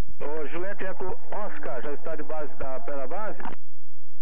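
Air-band radio transmission: a voice speaking over the aircraft radio, thin and cut off in the highs. It stops abruptly about three and a half seconds in, leaving a faint low hum.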